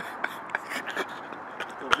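Crunching and chewing of a hard, dry sweet close to the microphone: a string of short, irregular crunches.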